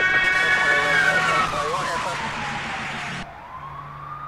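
Police siren sound effect wailing, its pitch falling slowly over about three seconds and then beginning to rise again. A wash of noise under it cuts off suddenly about three seconds in.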